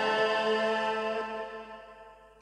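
Instrumental introduction of a tân cổ backing track: held notes that fade away gradually.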